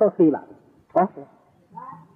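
A man's voice in two short, expressive utterances with falling pitch: one at the start and one about a second in.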